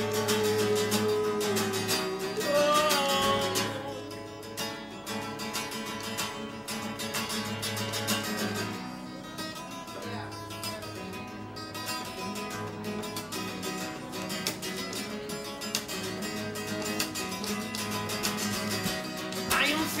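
Acoustic guitar strummed fast and hard in a flamenco-like rhythm over a steady low chord. A man's voice holds a low, wavering note over it for the first few seconds.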